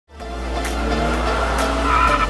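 Electronic intro music fading in at the start, with a steady deep bass, held synth tones and a regular beat.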